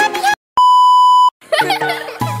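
A single steady electronic beep, one held high tone lasting about three quarters of a second and the loudest thing here, set between short snatches of music with a voice.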